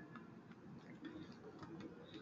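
Faint, irregular clicks of computer keyboard keys being typed.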